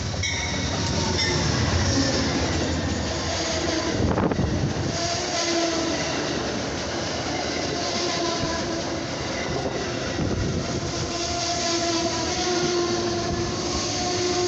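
Amtrak passenger train led by a GE P42DC diesel locomotive pulling into the station close by: the locomotive passes, then the passenger cars roll past with wheels clattering on the rails. From about five seconds in, wavering squealing tones from wheels and brakes join in as the train slows.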